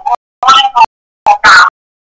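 Broken fragments of a person's voice from a recorded radio phone-in, three or four short bursts each cut off abruptly into dead silence, too chopped to make out words.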